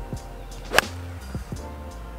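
A sand wedge strikes a golf ball off the tee: one sharp, crisp click a little under a second in. Background music with a steady bass line plays throughout.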